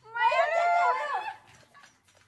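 A woman's high-pitched, wavering squeal of surprise, one cry about a second and a half long that then fades away.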